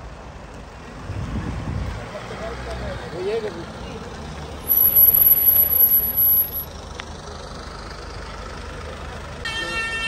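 Black Mercedes-Benz S-Class saloon rolling slowly past at walking pace, its engine a low steady hum, with a few voices close by and a thin high whistle about halfway through. Bagpipes start droning near the end.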